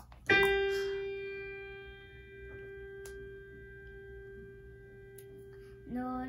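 A single note, the G above middle C, struck once on a digital piano and left to ring, fading slowly over several seconds.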